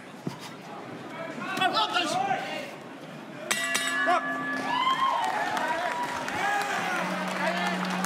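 Boxing ring bell struck in quick succession about three and a half seconds in, ringing for about a second to end the round. It sounds over arena crowd shouting and voices.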